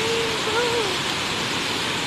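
Tinuy-an Falls, a wide curtain waterfall, sending out a steady rush of falling water.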